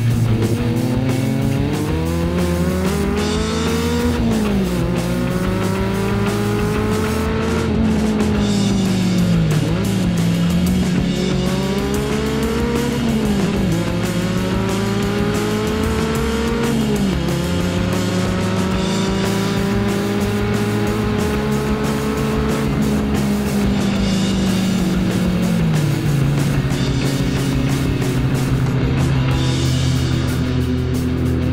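Car engine accelerating through the gears: its pitch climbs, then drops back at each upshift, about five times, with background music running underneath.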